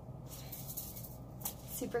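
Steady low room hum with a soft hiss for under a second, then a single click; a woman starts speaking near the end.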